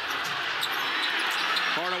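Steady noise of a large arena crowd, with a basketball being dribbled on a hardwood court.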